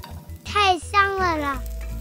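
A brief, high-pitched child-like voice speaks with gliding pitch, over steady background music.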